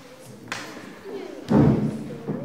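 A single heavy thump about one and a half seconds in, the loudest sound, under faint, indistinct voices.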